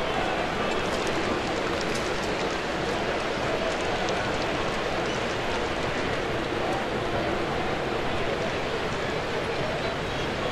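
Steady murmur of a ballpark crowd between pitches: many distant voices blend into an even hum.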